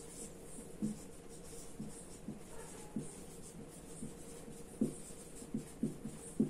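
Marker pen writing on a whiteboard: irregular short strokes and taps, with pauses between words, over a faint steady hum.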